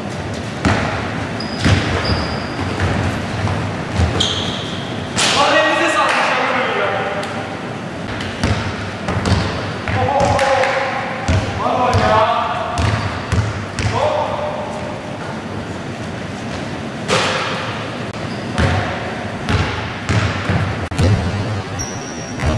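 Basketball bouncing repeatedly on a wooden gym floor during a pickup game, with short high sneaker squeaks and players shouting to each other a few times, echoing in a large hall.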